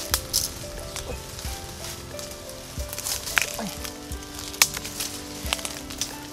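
Dry bamboo leaf litter and twigs crackling, with several sharp snaps, as someone moves through the stems picking bamboo shoots. Soft background music with sustained notes plays underneath.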